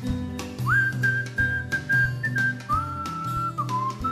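A whistled melody over a pop band backing of bass and drums. The whistle swoops up into a long held note about a second in, then steps down to lower notes in the second half.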